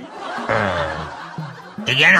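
A person laughing, a snickering chuckle that sets in about half a second in and fades near the end, over faint background music.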